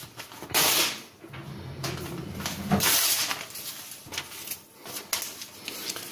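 A sheet of printed paper rustling as it is picked up and handled, in a few short bursts, the loudest about half a second in and around three seconds in.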